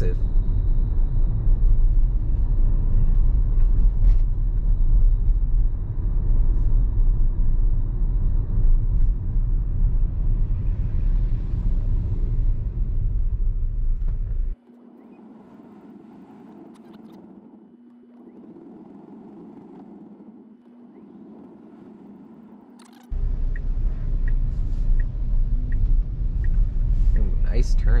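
Tyre and road rumble heard inside a Tesla Model Y's cabin as it drives. Part way through, the rumble drops away abruptly for about eight seconds, leaving a faint steady hum, then comes back just as suddenly. Near the end the turn signal ticks about twice a second.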